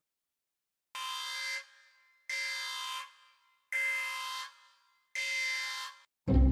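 Digital alarm clock going off: four electronic alarm tones, each under a second long, repeating about every second and a half.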